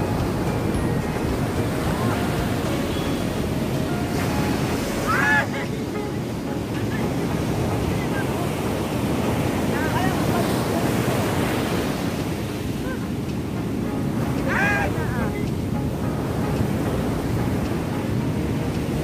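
Ocean surf breaking and washing up a sandy beach, a steady rush of waves, with wind buffeting the microphone. Brief shouts from people rise over it three times, about 5, 10 and 15 seconds in.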